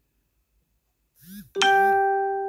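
Smartphone notification chime for an arriving Facebook notification: a single bell-like ding about one and a half seconds in, ringing on as it slowly fades.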